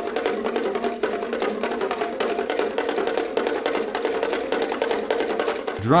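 Tuned bongo drums struck with sticks by several players, a rapid, continuous stream of interlocking strokes on a few fixed pitches. A short spoken word comes in right at the end.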